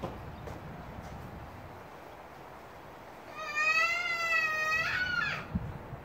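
An animal's long, high-pitched call, cat-like, lasting nearly two seconds from about three seconds in and dropping in pitch at its end. A short low thud follows just before the end.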